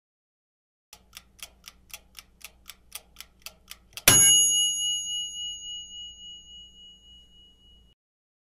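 Countdown timer sound effect: a clock ticking about four times a second for about three seconds, then a single bell ding that rings out and slowly fades, marking time up.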